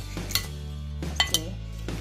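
Background music with steady low notes, and three sharp clinks of a plastic spoon against a glass bowl as a salad is tossed, one early and two close together past the middle.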